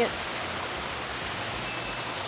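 Steady rushing of water from an artificial rock waterfall.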